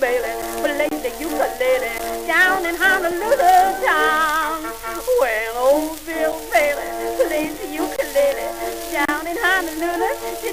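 1916 Victor 78 rpm acoustic-era record of a vaudeville song with orchestra: a melody line that wavers and slides in pitch over held accompanying notes, all in a thin, narrow band under steady record-surface crackle.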